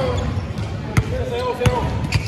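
Basketball dribbled on a hardwood gym floor: three sharp bounces, the first near the start, then about a second in and again just after, with players' voices in the background.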